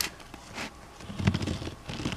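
Diamond-painting roller rolling over the glued plastic drills on the canvas, pressing them down. There is a rapid, crackly rattle from about a second in, and a sharp click at the very start.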